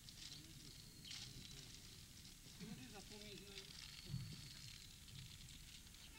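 Faint, indistinct voices of people talking, with a crackling rustle and a soft thump about four seconds in.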